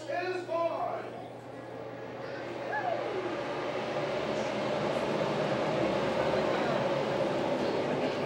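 A pack of NASCAR Cup stock cars, V8 engines at race speed, passing down the front stretch at the green flag. Heard from inside a glassed-in suite, the noise builds from about three seconds in to a steady, loud rumble.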